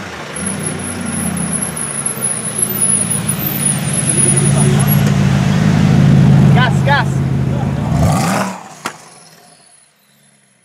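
Gumpert Apollo Sport's twin-turbo V8 running at low revs as it creeps past in slow traffic. It grows louder to a peak as it passes about six seconds in, then drops away sharply about eight and a half seconds in.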